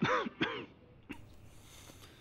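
A sick man coughing twice, hoarse, with the pitch falling in each cough: the cough of an ailing old man.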